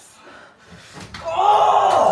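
A sharp slap about a second in, followed at once by a loud, drawn-out shout.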